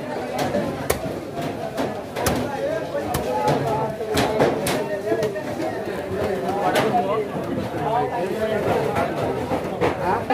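Large knife chopping through the flesh and bone of a big goonch catfish, sharp strikes at irregular intervals, under steady chatter of voices.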